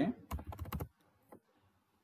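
Computer keyboard typing: a quick run of key clicks in the first second, then one more click a little later.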